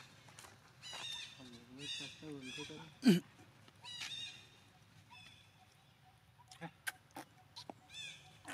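Baby monkey crying in short high-pitched calls that bend up and down, with one sharp, loud cry about three seconds in that drops in pitch. A few faint clicks near the end.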